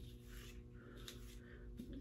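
A comb drawn through synthetic wig hair, heard as a few faint brushing strokes.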